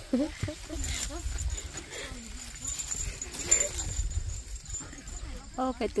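A young woman's soft, stifled laughter and small voice sounds, with a low rumble underneath; a louder spoken word comes near the end.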